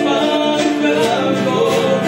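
Music: a song with voices singing, holding and bending long notes.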